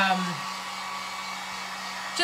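Handheld heat gun running steadily: an even rush of blown air over a steady motor hum.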